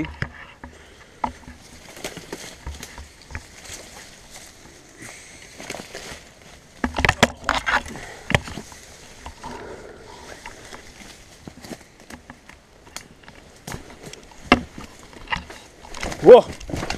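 Footsteps and rustling over stony, overgrown ground, mixed with the knocks and scrapes of a handheld camera being moved. There is a louder cluster of knocks about seven seconds in and a single sharp knock near the end.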